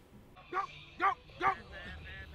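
Three short, sharp barks about half a second apart, starting about half a second in.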